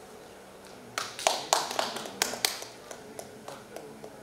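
A run of about a dozen sharp, irregular taps, three or four a second, loudest from about a second in and dying away toward the end.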